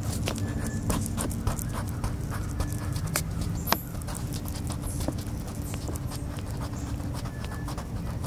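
Crayon strokes scratching and tapping on a coloring-book page, close to a microphone lying on the paper, with irregular clicks and one sharp click a little before halfway. A steady low rumble runs underneath.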